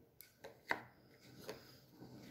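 Wooden game pieces clicking and knocking against a wooden game board on a tabletop: four short knocks, the third, just before the middle, the loudest.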